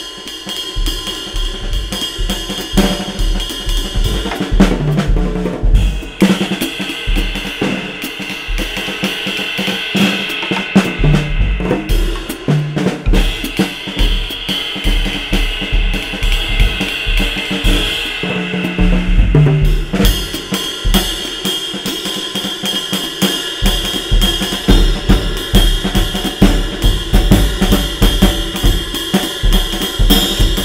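Acoustic drum kit played with heavy oak practice sticks at a light, nimble touch: a cymbal wash runs over quick snare strokes and bass drum hits. Short tom fills come in about 5, 12 and 19 seconds in.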